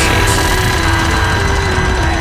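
Instrumental passage of an alternative rock song with no singing: a short stepping melody with strings over programmed drums and bass.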